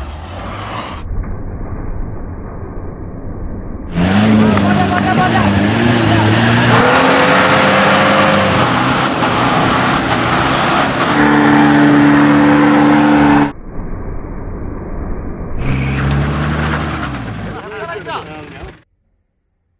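Mitsubishi Pajero 4x4 engines revving hard under load on muddy off-road climbs, in a run of short clips cut together. The loudest stretch starts about four seconds in with a rise in pitch that is then held high for several seconds, and a quieter stretch of engine sound follows near the end.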